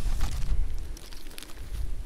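A gloved hand rummaging in a canvas pack pocket and drawing out a paper manual and a plastic-bagged emergency blanket, with rustling and a few light handling clicks. A low wind rumble on the microphone lies under it.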